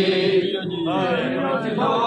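Male voices chanting a noha, an unaccompanied Punjabi mourning lament for Imam Ali. A long held note ends about half a second in, and a new sung phrase begins right after.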